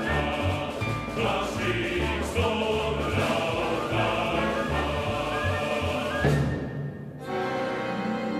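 Choir singing a brisk, rhythmic song with symphony orchestra and piano. About six seconds in, the choir's line ends on a loud accent. The orchestra then carries on, and a sustained brass-coloured chord enters near the end.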